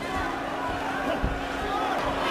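Boxing arena crowd noise, a steady murmur of many voices with a constant low hum under it and faint voices rising out of it now and then.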